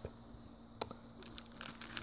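Faint crinkling of small plastic bags and packets being handled in a plastic kit box, with one light click a little before a second in and the rustling thickening in the second half.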